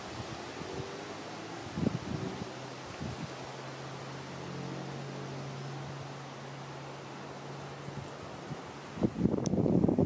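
Wind blowing across a small camera microphone with rustling, a steady swishy noise. Through the middle a low steady hum sits under it, and a few soft thumps come near the start.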